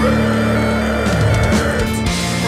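Melodic death metal music, instrumental at this point: distorted electric guitars over bass and drums, playing continuously and loud.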